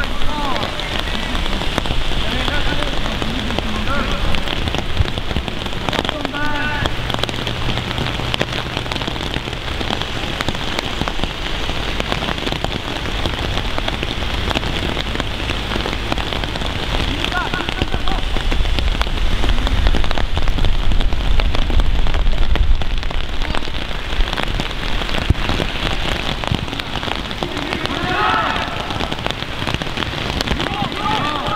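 A steady, dense hiss made of many fine ticks. Faint distant shouts from the pitch come through now and then, about four times.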